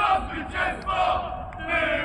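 A group of people chanting together in loud, drawn-out voiced phrases.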